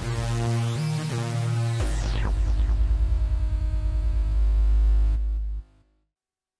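Mayer EMI MD900 virtual-analog synthesizer playing a bass patch. A few low notes change pitch with rising sweeps in the upper tone. About two seconds in, a deep held note pulses rapidly, then cuts off shortly before the end.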